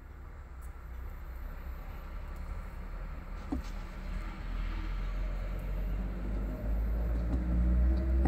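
A low rumble that slowly grows louder, with a faint click about three and a half seconds in.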